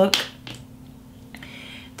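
A short sharp click just as a spoken word ends, then quiet room tone with a faint steady hum. A faint soft hiss comes in during the last half second or so.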